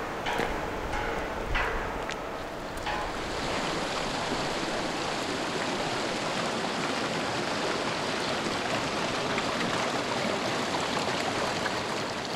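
Steady rushing of flowing water, an even unbroken noise that fills in from about three seconds in, after a few faint clicks.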